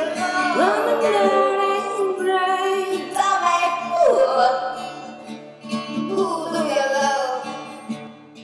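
A woman singing wordless, sliding vocal lines, her voice gliding up and down in pitch. An instrument accompanies her. The voice dips quieter about five to six seconds in.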